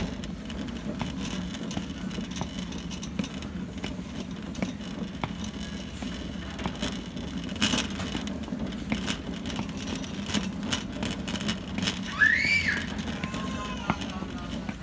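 Shopping cart rolling on a hard store floor: a steady rumble from its wheels, with the wire frame rattling and clicking, footsteps, and a louder clank about halfway. A short squeal, rising then falling in pitch, near the end.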